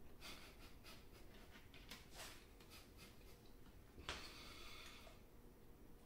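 Faint crunching as a mouthful of mofongo with crispy fried pork belly (chicharrón) is chewed: a run of irregular crisp crackles over the first couple of seconds, then a breath out through the nose about four seconds in.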